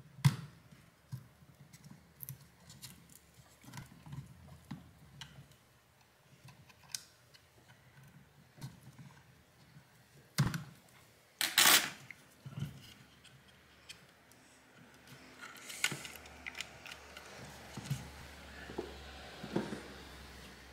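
Scattered small clicks and taps of metal tweezers and a pick working against the plastic housing and a wire connector of a portable Bluetooth speaker, with the loudest, sharpest clicks near the middle.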